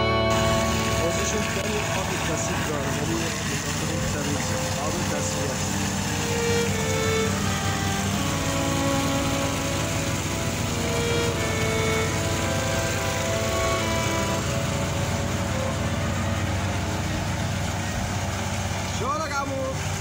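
A motor-driven water pump runs steadily, feeding water through a corrugated hose into a concrete cistern, with children's voices over it.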